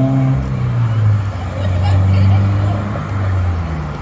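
Road traffic: car engines passing on the street, a low hum that swells twice and slowly shifts in pitch.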